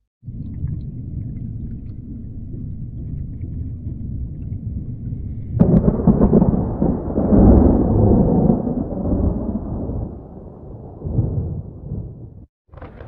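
Low, steady rumbling noise that jumps suddenly louder and fuller about five and a half seconds in, then rolls on in swells and fades away toward the end, like a thunderclap.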